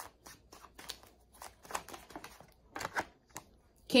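Tarot cards being shuffled and handled by hand: an irregular scatter of light clicks and short swishes of card stock.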